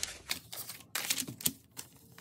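Paper dollar bills being handled and laid onto piles: crisp rustling with several sharp snaps of paper.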